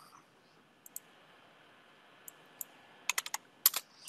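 Computer keyboard and mouse clicks: a few single clicks spaced apart, then a quick run of keystrokes near the end.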